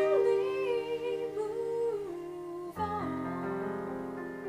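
A woman's voice sings a drawn-out, wavering line over sustained digital piano chords. The voice stops about halfway through, and a new chord is struck near three seconds in, after which the piano plays on alone.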